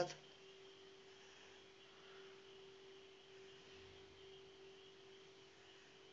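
Near silence: room tone with one faint, steady hum held at a single pitch.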